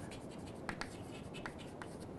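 Chalk writing on a blackboard: faint scratching of the strokes with a few short taps, a pair about three quarters of a second in and another near the end.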